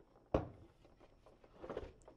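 The plastic housing of a four-port battery charger being handled and turned over: one sharp knock a third of a second in, then a softer scrape near the end.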